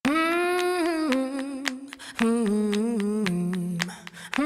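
A single unaccompanied voice singing slow, long-held notes that slide and waver between pitches, each phrase stepping lower, with a short break about halfway.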